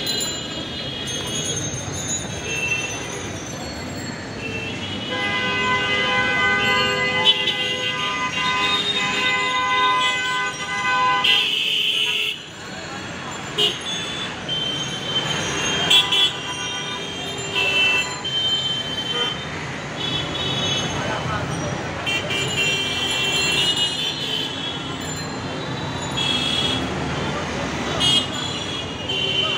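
Heavy street traffic with near-constant honking from many vehicle horns, short toots overlapping throughout. One horn is held for about six seconds near the middle.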